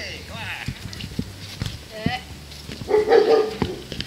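A dog barking: a short bark about two seconds in and a louder, longer one about three seconds in.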